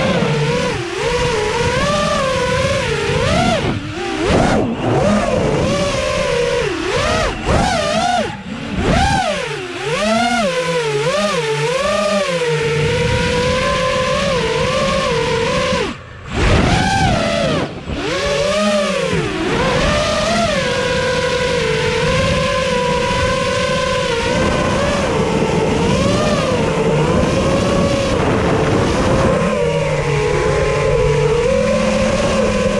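Racing quadcopter's four iFlight Xing 2207 2450kv brushless motors and 5-inch props whining, recorded onboard. The pitch swings up and down again and again with the throttle and cuts out briefly about halfway through, then holds a steadier drone near the end.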